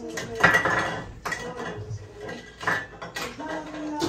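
Dishes and cutlery clattering and clinking, a run of sharp knocks with brief metallic ringing.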